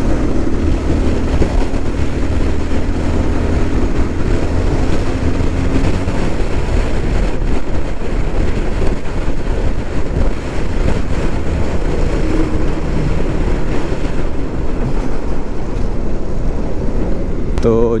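Steady wind noise on the camera microphone of a moving motorcycle, over the low drone of the bike's engine, a Bajaj Pulsar 220F single-cylinder.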